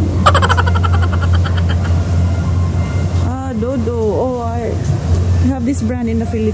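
People talking over a steady low hum, with a quick rattling run of sound in the first second or so.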